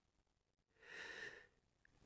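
Near silence, with one faint, short breath from the audiobook narrator about a second in.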